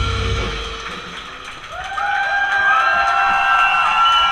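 A live rock band finishes a song: the drums and guitars stop together and the sound dies away over about a second. Then, about two seconds in, long held high tones come in and rise slightly before holding steady.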